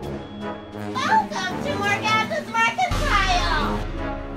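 Young girls' high-pitched voices in a quick run of excited calls, the last one sliding down in pitch. Background music thins out at first and comes back in about three seconds in.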